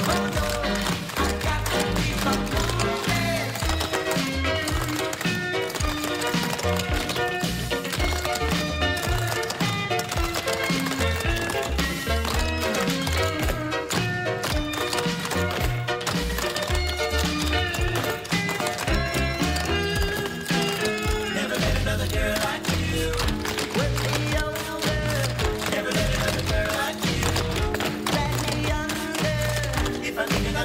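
Dance music playing, with the taps of a group of clog dancers' shoes striking a wooden stage floor in time with it.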